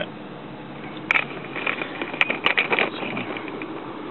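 Ford pickup's engine idling at about 700 rpm, heard from inside the cab. A run of sharp clicks and rustles from handling comes between about one and three seconds in.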